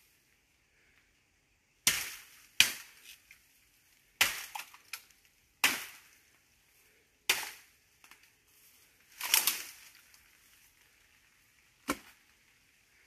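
A machete chopping bamboo: about seven sharp, cracking strikes at uneven intervals of roughly one to two seconds, the sixth lasting longer than the rest.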